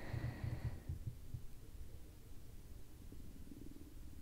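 Quiet room tone: a faint, irregular low rumble and hum, strongest in the first second or so, with a faint high tone that fades out within the first second.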